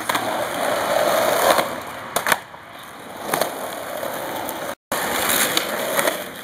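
Skateboard wheels rolling over rough pavement, with a couple of sharp clacks of the board about two and three seconds in. The sound drops out for a moment near the end.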